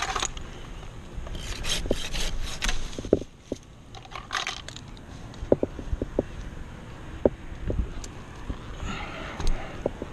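Rigging rope and wood scraping and rubbing against the oak trunk as a cut section hangs and swings on the line, with scattered light clicks and knocks of metal climbing hardware. A run of short scrapes comes in the first few seconds, and the clicks follow through the rest.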